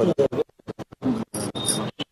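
Voices heard only in short choppy fragments, broken by many abrupt cut-outs to silence, giving a stuttering, scratch-like effect.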